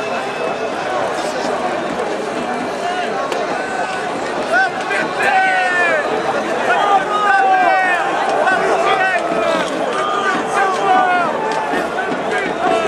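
Football stadium crowd: a dense mass of overlapping voices shouting and calling. It grows louder about four and a half seconds in, when many separate high shouts rise above the din.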